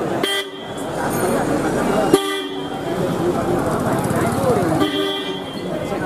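A vehicle horn sounds three short toots, about half a second, two seconds and five seconds in, the last a little longer, over a steady murmur of people talking.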